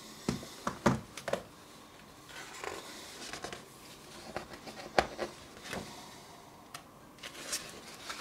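Pages of a large book being turned and handled: paper rustling and sliding, with scattered short taps as pages settle, several in the first second or so and a few more later.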